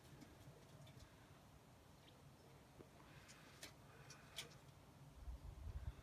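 Near silence: faint outdoor background with a few faint, sharp ticks a little past the middle and a brief low rumble near the end.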